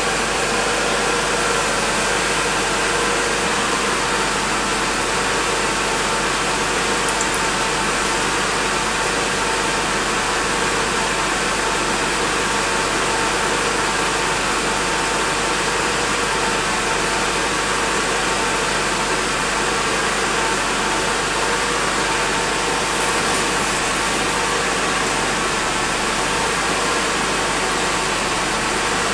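Mercedes-Benz car engine idling steadily, heard from inside the cabin as an even hiss with a faint low hum.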